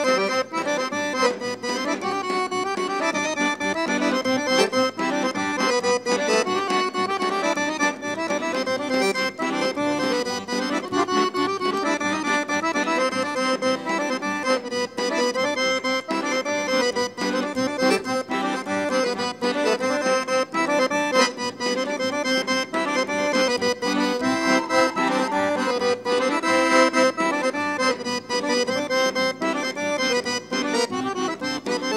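Bulgarian folk dance music: an accordion plays a busy melody over a steady drum beat.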